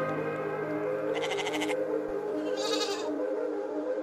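Background music with a sheep bleating twice over it, once about a second in and again near three seconds.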